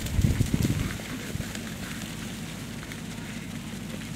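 Wind buffeting the microphone: a low rumble with faint crackle, with a louder gust in the first second.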